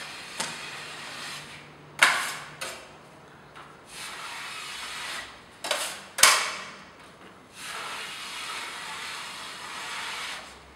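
Drywall joint knife and trowel spreading wet joint compound along a flat joint: long rasping scrapes of steel blade over the mud and board. Between the swipes, around two and six seconds in, come a few sharp metallic clacks, the loudest near six seconds, as the knife and trowel knock together.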